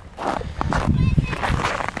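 Irregular scuffing and rustling of people and a snow tube shifting on packed snow.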